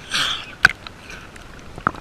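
Seawater sloshing over a GoPro camera as it dips under the surface: a short rush of water at the start, then two sharp clicks.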